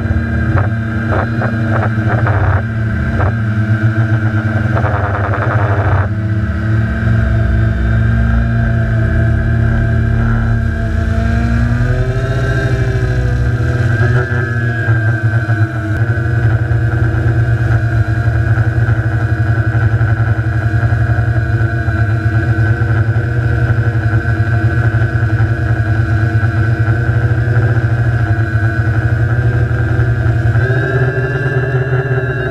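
Quadcopter's electric motors and propellers running, heard from the camera on the craft itself: a loud steady drone made of several pitches, which bend up and down about twelve to fifteen seconds in as the throttle changes.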